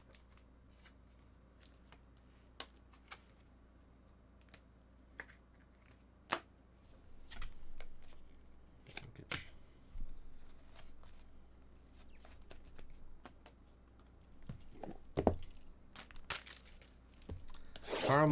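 Trading cards and their packaging being handled: scattered soft slides and taps of cards and short rustling, tearing and crinkling sounds of wrappers, separated by quiet gaps, with a louder burst of rustling and tearing near the end.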